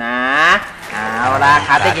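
A man speaking Thai, drawing out a long rising "naaa" at the start, then talking on.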